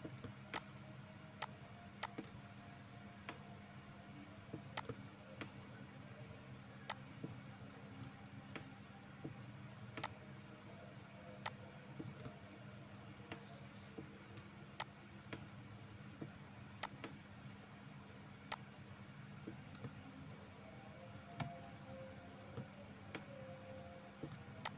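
Faint computer mouse clicks at irregular gaps of about a second, over a low steady electrical hum.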